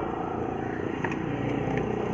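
A steady, low mechanical drone with an even rumble.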